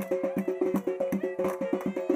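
Live folk dance music: a clarinet playing a fast melody of short notes over a large double-headed drum beaten in a quick, steady rhythm.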